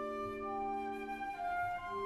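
Symphony orchestra playing an instrumental passage: a flute-like woodwind melody over sustained chords, the harmony shifting a little past halfway.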